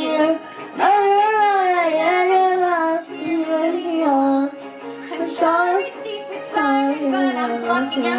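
A young girl singing over karaoke backing music, holding long notes that glide up and down.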